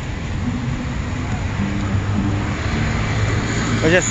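Busy city street noise: a steady rumble of passing vehicles, with short pitched tones coming and going over it.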